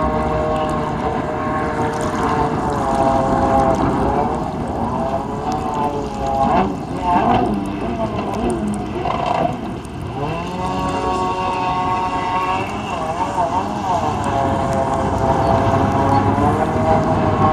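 Stand-up jet ski's engine running across the water, its pitch dipping and climbing again several times as the throttle comes off and back on through turns, with a rougher, choppier stretch midway.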